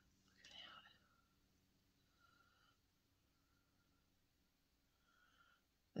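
Near silence: room tone, with a faint whisper about half a second in.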